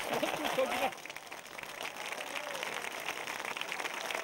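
A crowd of voices talking and calling out over one another, then, from about a second in, a crowd applauding steadily.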